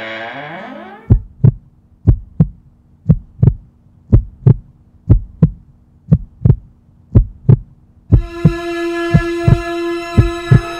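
Intro soundtrack with a heartbeat sound effect: paired thumps about once a second over a low steady hum. A held chord of several tones swells in near the end.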